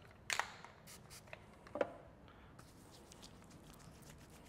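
Faint handling sounds of a bottle of smoothing styling lotion being picked up and dispensed into the hand: a sharp click just after the start, a few smaller clicks and a short squirt-like burst a little before two seconds in.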